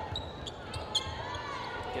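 Basketball being dribbled on a hardwood gym floor during live play, with a couple of sharp bounces about half a second apart and faint voices from the court.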